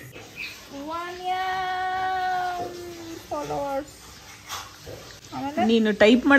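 A drawn-out vocal call held on one pitch for about two seconds, then a shorter falling call. Speech begins near the end.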